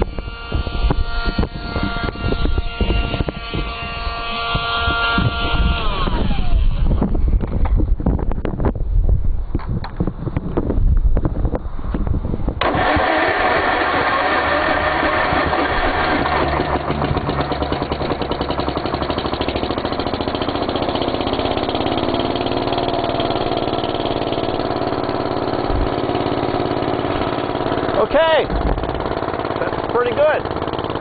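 A small battery-operated blower whines steadily, then winds down about six seconds in. After several seconds of cranking, the Gravely tractor's engine catches about halfway through and runs steadily on charcoal gas from the gasifier.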